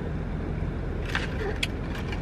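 Steady low hum inside a car's cabin, with a couple of brief clicks about a second in and again just past one and a half seconds.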